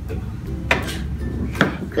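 Two short, sharp knocks on a tabletop about a second apart, over a steady low hum.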